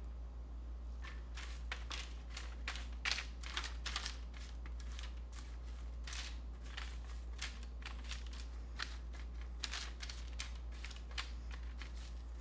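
Diced peppers being knocked off a metal bench scraper and spread by hand across parchment paper on a baking sheet: light, irregular taps and paper rustles over a steady low hum.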